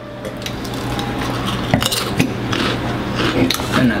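Crunchy potato chips being chewed and a crinkly plastic chip bag being handled: a dense run of small crackles and clicks with a few sharper knocks, over a low steady hum.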